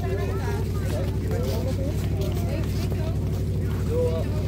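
A steady low engine drone, unchanging throughout, with voices talking over it.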